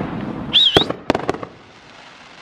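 Aerial fireworks going off: a brief high wavering whistle, then about four sharp cracks within half a second.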